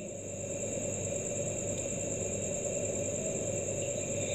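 Steady background noise with a low hum and a faint, constant high-pitched whine, with no distinct events: room tone.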